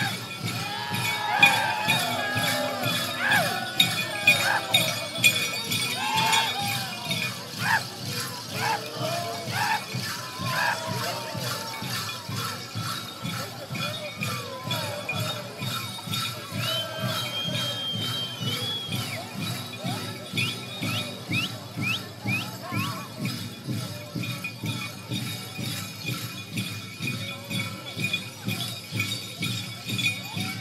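Apache Gaan dance accompaniment: a steady, quick beat with the jingling of the dancers' metal bells and jingles, and voices singing and calling out, strongest in the first half.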